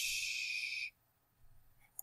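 A soft breath out, a short breathy hiss close to the microphone lasting just under a second, then quiet.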